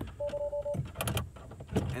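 Tesla Model 3 giving a short, steady two-tone beep lasting about half a second as the manual charge-port release tab in the trunk is pulled. A couple of sharp clicks follow about a second in as the charge-port latch lets go of the plug.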